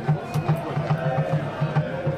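A rapid, even drumbeat from supporters in the stands, about five beats a second, with a long held note from a voice or horn over it in the second half.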